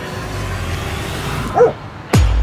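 A single short dog bark about a second and a half in, over a low steady rumble.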